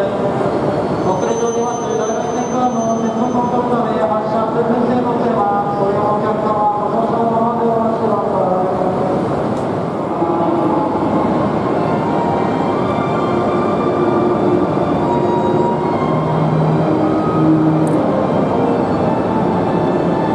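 Tohoku Shinkansen trains moving along a station platform, with steady train running noise. An E2-series train is heard first, then an E5-series train from about halfway.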